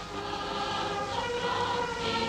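Choir singing held chords, several voices sustaining notes together.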